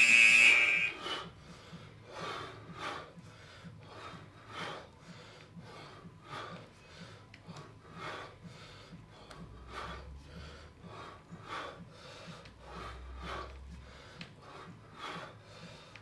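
A workout interval-timer buzzer sounds a steady, high electronic tone for about the first second, marking the start of a work interval. After that there are only faint, rhythmic sounds of breathing and movement, about two a second, during kettlebell swings.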